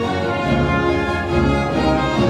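Orchestra playing a passage of film score, brass and strings holding sustained chords.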